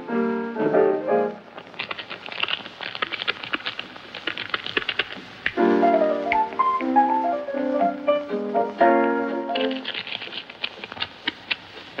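Jazz music traded in short sections: held chords, then a stretch of rapid clicking clatter, then a melodic phrase, then the rapid clatter again.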